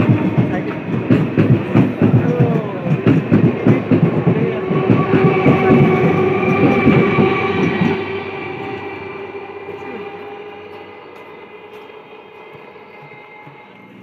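Electric multiple-unit local train running past along the platform, its wheels clattering rapidly over the rail joints under a steady motor whine. About eight seconds in the clatter stops, leaving a fainter steady hum that fades away.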